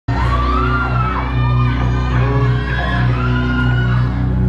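Loud live concert music through a PA, with deep sustained bass notes, and fans screaming and cheering over it.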